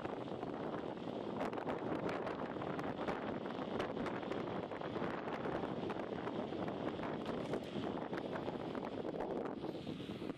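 Wind buffeting the microphone of a camera riding on a moving bicycle, a steady rushing noise, with many small rattling clicks from the ride over a rough road surface.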